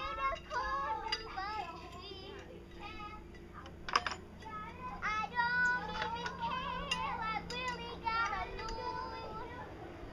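Children's high voices chattering and singing, with a sharp click about four seconds in.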